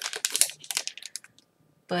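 Clear plastic bag crinkling as it is handled, a quick, dense run of crackles over the first second or so.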